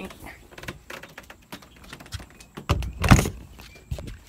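An RV's outside kitchen hatch being swung down and shut: light rattles and clicks of the hatch being handled, then a loud thud as it closes, about three seconds in.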